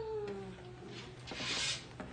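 A single high, voice-like call that swoops up and then slides slowly down in pitch, followed near the end by a brief rustle.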